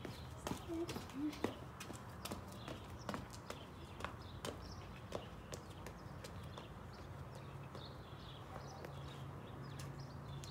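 Sneakers slapping a concrete driveway in irregular steps, running strides and hops, densest in the first half, over a faint steady low hum.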